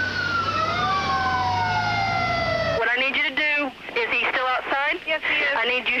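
Ambulance siren wailing in one long slow fall in pitch, with a second siren tone overlapping and an engine rumbling underneath. It cuts off suddenly about halfway through.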